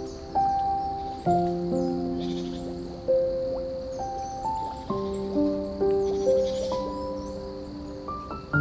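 Slow, soft piano music: single notes and chords struck every half second to a second and left to ring and fade. Beneath it runs a steady hiss of flowing water.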